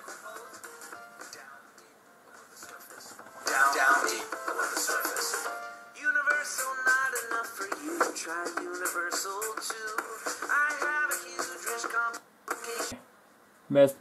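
Music and a voice from a YouTube video playing through a PowerBook G4 laptop's built-in speakers, quiet at first and louder from about three and a half seconds in, with a short drop near the end. The playback has a distortion that the owner suspects comes from the bass being way up.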